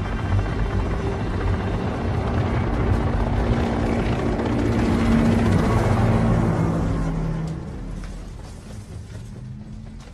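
Film soundtrack: music with a deep rumble underneath, building to a peak about five or six seconds in, then fading away.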